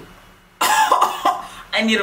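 A woman's unworded vocal outburst. About half a second of quiet comes first, then a burst of voice lasting about a second, and a brief spoken word near the end.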